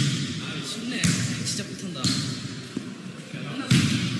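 Basketball bouncing on a wooden gym floor a few times, about a second in, two seconds in and near the end, with people's voices between the bounces.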